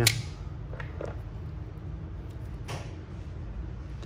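Shimano Stradic 5000XG spinning reel being worked by hand: a sharp click at the start, then quiet, smooth winding with a few faint clicks about a second in and near three seconds in.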